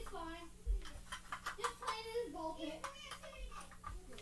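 A young voice murmuring indistinctly, with light clicks and taps of small diecast metal toy cars being handled.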